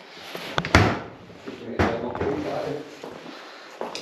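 Changing-room locker doors being unlocked with their keys and opened: a sharp knock about a second in, the loudest, another just under a second and a half later, and a third near the end.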